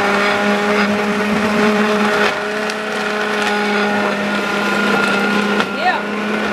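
Blender motor running steadily with a constant hum, blending ice, frozen fruit and spinach into a green smoothie.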